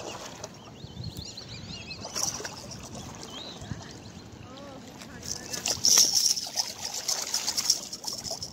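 Foul-hooked blue tilapia splashing at the pond surface as it is fought in to the bank; the splashing is loudest in the last three seconds.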